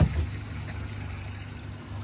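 A single thump right at the start, then the low, steady hum of an idling engine.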